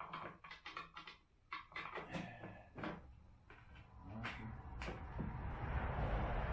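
Light clicks and knocks of metal hardware against the plastic dump cart's handle bracket as a washer and nut are fitted by hand, with two sharper clicks about four seconds in. A broad rushing noise swells up near the end.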